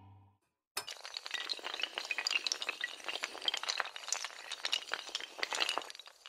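Glass-shattering sound effect: a sudden crash about a second in, then a long, dense run of tinkling, clinking shards.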